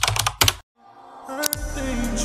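Keyboard typing sound effect: a quick run of keystroke clicks for about half a second, matching password dots filling in. After a short gap, a rising swell with a sharp hit about a second and a half in leads into music.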